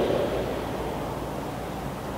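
Steady low hum and hiss in a stationary car's cabin.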